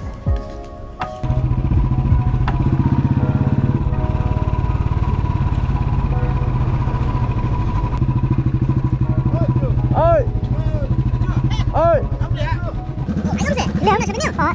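Motorcycle engine running steadily under way, heard from the rider's seat, with even, rapid exhaust pulses; it starts suddenly about a second in and eases off near the end as the bike stops.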